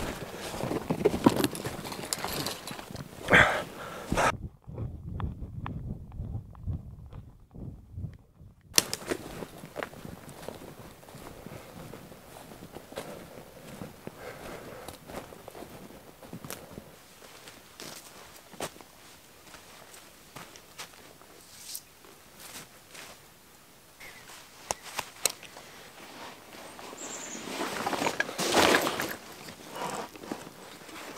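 Footsteps crunching irregularly through dry leaf litter on a forest floor, sounding muffled for a few seconds early on. A louder burst of rustling comes near the end.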